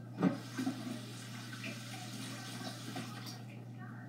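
Water running from a kitchen tap as a green pepper is rinsed under it, a steady rush, with a single knock just after the start. A low steady hum lies underneath.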